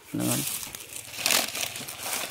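Dry leaves crackling and rustling as papayas are handled in a plastic crate lined with them, with a louder burst of rustling a little past the middle.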